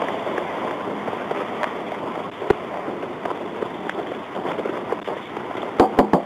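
Steady rustle and hiss on a police officer's wireless microphone as he walks up to a stopped car, with a single sharp click about two and a half seconds in and a quick run of sharp knocks or footsteps near the end.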